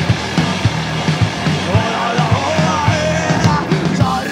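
Live punk rock band playing loudly: drum kit keeping a driving beat of about three hits a second under bass and guitar, with a melody line coming in over it about halfway through.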